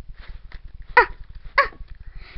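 A child's two short, high-pitched "ah" yelps about half a second apart, each falling in pitch, voicing a doll's squeals in play.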